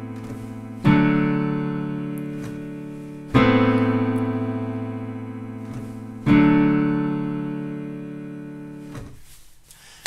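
Piano chords played as accompaniment for a sung vocal-run exercise, with no voice over them. Three chords are struck, about a second in, about a third of the way through and about two-thirds through. Each is left to ring and fade, and the last dies away about a second before the end.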